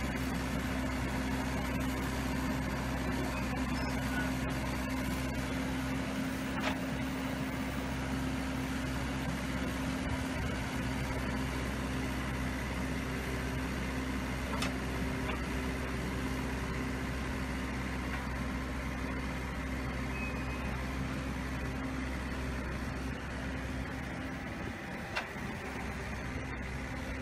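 Engine of a land-leveling earth-moving machine running steadily, a low hum with a few faint clicks.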